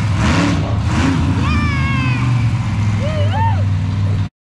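Monster truck engine running with a steady low drone while the truck drives over and down off a row of crushed cars. Rising and falling high-pitched sounds lie over it.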